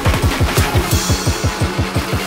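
Drum and bass music: a rapid run of short bass hits, each falling in pitch, about nine a second, over a steady bright hiss.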